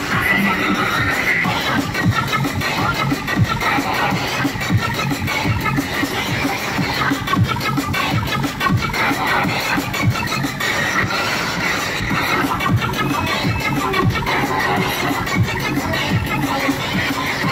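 Neurofunk drum and bass DJ set playing loud over a club sound system, with a fast, busy drum pattern.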